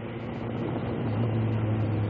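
Steady low drone of road and traffic noise while riding, with an even rushing haze over it.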